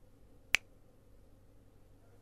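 A single sharp click about half a second in, over a faint steady low hum.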